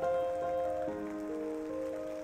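Rain sound effect, a steady patter, under soft background music of slowly changing held notes.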